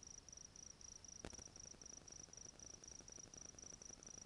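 Faint cricket chirping: a steady, even rhythm of short high-pitched pulses, about five a second. A single soft click sounds about a second in.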